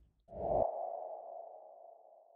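Logo sting sound effect: a low hit about a third of a second in, then a mid-pitched ringing tone that slowly fades away.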